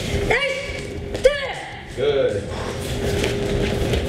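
Short voiced shouts, three times roughly a second apart, each rising and falling in pitch, with a sharp thud about a second in, from people doing martial-arts jump kicks on training mats.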